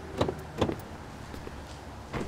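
Car door sounds as a passenger gets out of a parked car: two short sharp knocks, about a quarter and about two thirds of a second in, over the car's engine idling low and steady.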